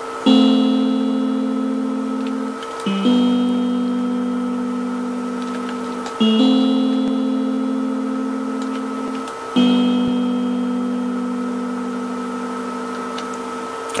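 Electronic keyboard playing four long held notes one after another, each about three seconds long and fading slowly before the next one starts. A faint steady hum runs underneath.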